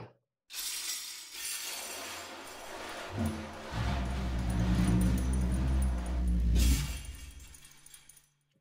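Sampled drum techniques: the metal jingles of a drum spun into a continuous, harsh jingling rattle. About three seconds in, a low drone from a rubbed drum head joins it, and both fade out near the end.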